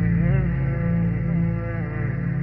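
Background music: a slow, wavering chant-like melody over a steady low drone.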